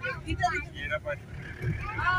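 Steady low rumble of a car's engine and tyres heard from inside the moving car, with people's voices talking over it in the first second or so.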